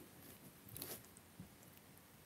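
Near silence: room tone, with one faint, brief rustle just under a second in and a tiny tick a little later.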